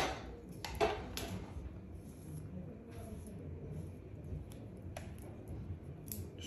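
Hand tools being handled: a sharp clack at the start as the hair straightening iron is set down, then two lighter knocks about a second in and a few faint clicks.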